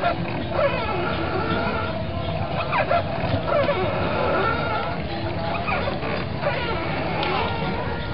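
Crowd ambience at a bathing ghat: scattered voices with dogs barking and yelping, over steady held tones in the background.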